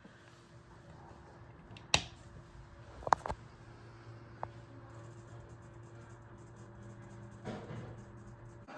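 Daikin wall-mounted split-system indoor unit starting up after being switched on: a few sharp clicks about two and three seconds in, then a steady low electric hum as it runs.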